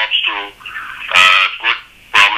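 A man's voice over a phone line making wordless sounds: a short pitched utterance near the start, then a louder vocal sound with a clear pitch, about half a second long, a little over a second in.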